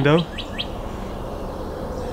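A small bird chirping outdoors: two or three short, high chirps in the first second, then only faint background.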